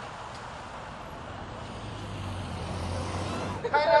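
Street traffic noise with a motor vehicle's low engine rumble growing louder through the middle. Just before the end a crowd starts chanting "China".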